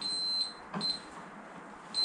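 Digital multimeter's continuity beeper sounding a single high-pitched tone as the probes touch the speaker cabinet's wiring. There is a half-second beep, a brief one a little before one second, and another starting near the end. Each beep is the meter showing an unbroken connection.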